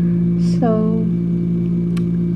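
A steady, unchanging low hum with several fixed pitches, loud throughout, and a brief click near the end.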